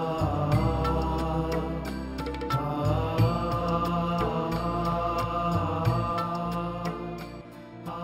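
Background music: long held tones over a steady low drone, growing quieter near the end.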